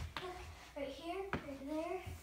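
A child's voice talking, with a single sharp knock a little past halfway.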